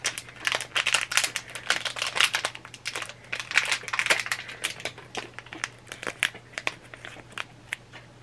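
Blind-box pin packaging crinkling and rustling as it is torn open by hand, a dense run of irregular crackles that thins out over the last few seconds.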